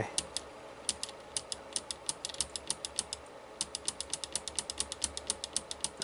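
Small pushbutton clicked repeatedly by hand, several sharp clicks a second with a brief pause a little past three seconds in. Each press steps a TTL program counter one count.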